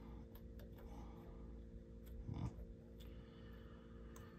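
Quiet hand work on a UTV ball joint: a few faint small clicks as a nut is fiddled onto the ball-joint stud by hand, over a low steady hum, with a short vocal sound from the mechanic a little past halfway.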